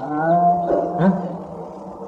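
A man's voice drawing out one long held vowel-like sound, with a second shorter sound about a second in, then trailing off softer.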